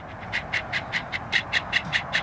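Quick, even rhythm of short swishing ticks, about seven a second, from a man doing a squatting kick dance on grass.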